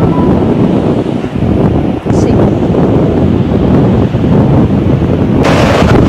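Wind buffeting a clip-on microphone, a loud, unsteady rumble. Near the end a brighter hiss joins in.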